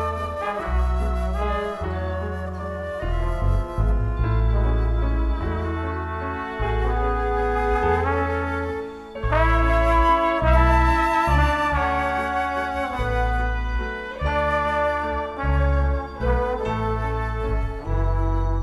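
A live band playing an instrumental passage, with the horn section carrying the melody over a heavy bass line, piano and organ.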